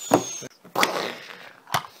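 A Lego set and its cardboard box being handled on a tabletop: a sharp knock just after the start, a hissing rush about a second in, and a short click near the end.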